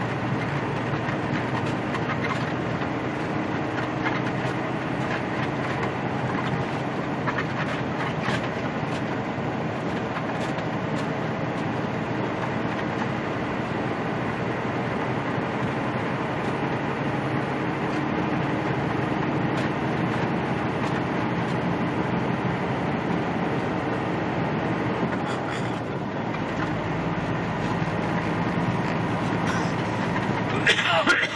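Inside a semi truck's cab while driving: a steady drone of the diesel engine and tyres on the road. The low rumble grows stronger about four seconds before the end.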